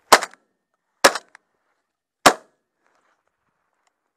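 Three sharp shotgun shots, about a second apart.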